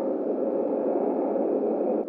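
Steady low ambient drone of a dark abandoned-building soundscape: an even, noisy hum with no distinct creaks or knocks.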